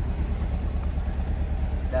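A car engine idling: a steady low rumble with no change in pitch or level.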